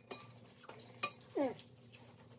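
Metal forks scraping and clinking on ceramic plates of poutine, with one sharp clink about a second in. A short falling hum of a voice follows just after it.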